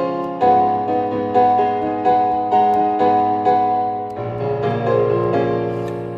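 A piano-like keyboard sound from Ableton Live, played by swiping and tapping across the Fingertip MIDI iPad app with two hands. Chords are struck about every half second over a held bass root note, which changes twice. The sound dies away near the end.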